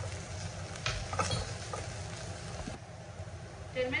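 Wooden spatula stirring chopped onions and ginger-garlic paste in hot oil in a nonstick pan: a light frying sizzle with a few scraping knocks about a second in, over a steady low hum. The sizzle thins out near the end.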